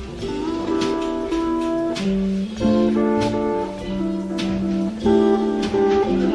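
Electric lap steel guitar sliding between held notes in a slow instrumental, over electric soprano ukulele, washtub bass and drums. A light stroke falls about every 1.2 seconds.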